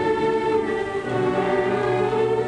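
Orchestral film score with a choir, holding sustained chords; the bass moves to a lower note about a second in.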